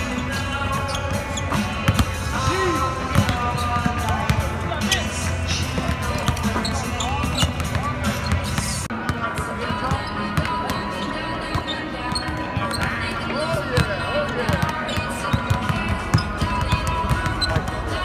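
Several basketballs bouncing on a hardwood court at irregular times, echoing in a large arena, with music playing and voices in the background.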